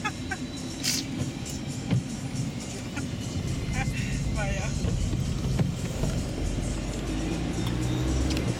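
Car cabin noise while driving on wet roads: a steady low rumble of engine and tyres that grows a little stronger near the end. A couple of sharp knocks come about one and two seconds in.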